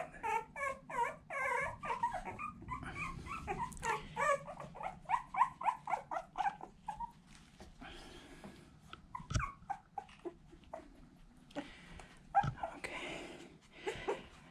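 Very young boxer puppy, about two weeks old, whimpering and squealing in a quick run of short high cries for the first seven seconds or so, then falling quiet. Two sharp knocks come later.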